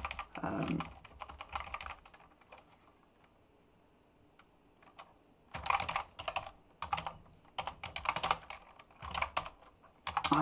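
Typing on a computer keyboard in quick runs of keystrokes, pausing for about two seconds midway before a fresh burst of typing starts.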